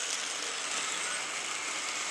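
Rivarossi Boston & Albany Hudson model steam locomotive running along the track, its small electric motor and gear drive whirring steadily with the wheels on the rails. It has just started after sitting, and the owner assumes it needs a bit of waking up.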